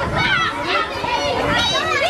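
A group of children chattering and calling out all at once, many high voices overlapping with no single speaker standing out.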